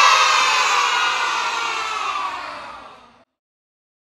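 A cheering sound effect that fades out over about three seconds, then stops into silence.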